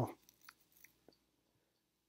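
Near silence with a few faint, small clicks in the first second.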